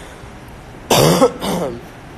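A man coughs: a loud, harsh cough about a second in, followed by a shorter, weaker one.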